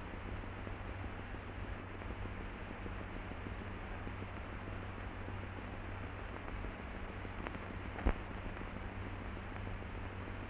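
Steady hiss and low hum of an old film soundtrack, with no aircraft engine to be heard, and a single sharp click about eight seconds in.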